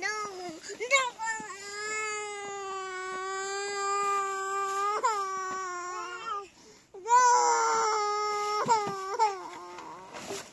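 Infant crying in long drawn-out wails: one held for about five seconds, then a short break and a second wail.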